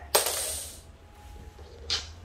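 A long coil of bare copper wire set down on a wooden floor: a sudden metallic jingle of the loops rattling against each other that fades within about a second, then a second, shorter rattle near the end.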